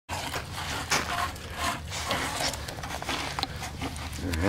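A bare hand mixing wet refractory cement mud in a plastic bucket: irregular wet stirring noises with a few sharper clicks, over a steady low hum.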